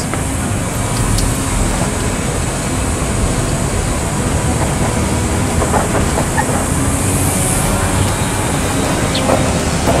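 Steady low rumbling noise with a hiss over it, unbroken and without any clear rhythm or single event.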